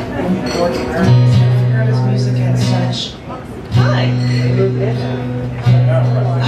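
Acoustic guitar being tuned: a low string plucked and left to ring, three long low notes in a row, the first about a second in and the last near the end.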